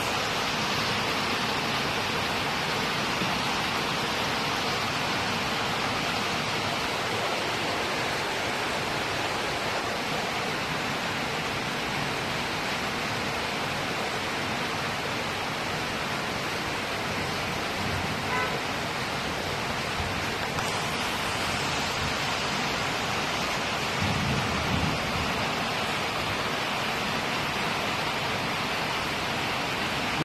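Steady, even rushing noise throughout, with a few faint soft knocks.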